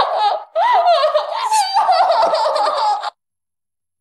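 A woman giggling in two bursts, her voice wavering up and down in pitch, cut off suddenly about three seconds in.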